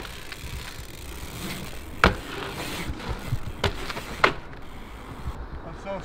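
Dirt jump bike being ridden on asphalt: steady rolling noise with three sharp knocks from the bike, the loudest about two seconds in.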